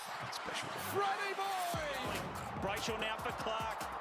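Football highlight clip playing at low volume: background music with a voice over it.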